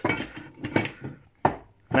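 A flat metal bar being turned over and handled on a wooden workbench: a few sharp knocks and clinks of metal on wood, with light scraping between them.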